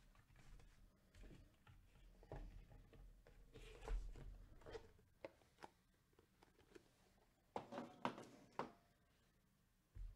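Faint, scattered clicks and light knocks, the loudest about four seconds in and a quick cluster of them around eight seconds in.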